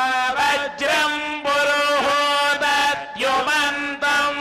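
A male priest chanting Vedic Sanskrit mantras into a microphone, a recitation held on a few steady pitches with short breaks between phrases.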